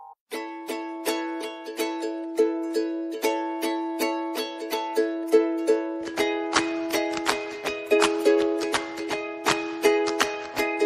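Background music: a light, bouncy tune of plucked-string notes in a steady rhythm, growing fuller with added instruments and a lower part about six seconds in.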